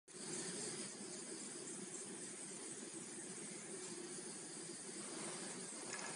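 Faint steady background hiss with no distinct calls or knocks.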